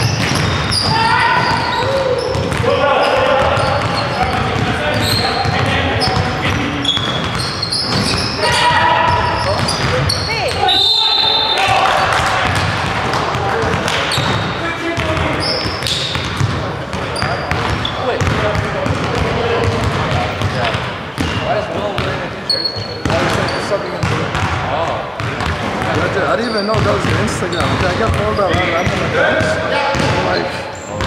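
Pickup basketball in a gymnasium: a ball bouncing on the hardwood floor, sneakers squeaking in short high chirps, and players' voices calling out across the court.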